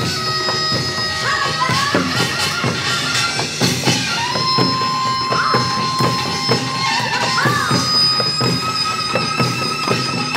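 Korean pungmul farmers' band music: a shrill reed melody holding long notes with quick bends, over fast strikes of hand drums.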